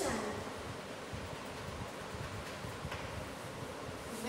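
Steady background room noise, a faint even hiss over a low rumble, with the tail of a spoken word right at the start and one faint tick about three seconds in.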